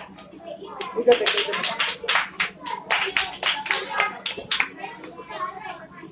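A group of children clapping their hands, a quick irregular patter that starts about a second in and dies away near five seconds, with children's voices around it.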